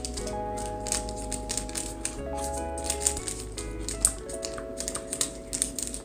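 Background music of held, steady chords that change every second or two, with light clicking throughout.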